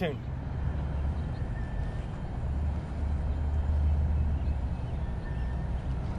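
Steady low rumble of outdoor background noise with no speech, swelling slightly in the middle.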